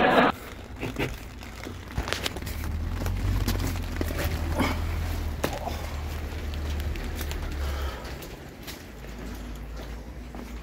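Footsteps on wet block paving and handling noise, scattered clicks and knocks, as a person gets out of a car and walks behind it. A low rumble on the microphone runs from about two to eight seconds in.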